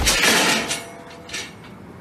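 A sharp smack of an elbow striking a man's face, followed at once by a loud rush of noise and a second, shorter burst about a second and a half in as he doubles over.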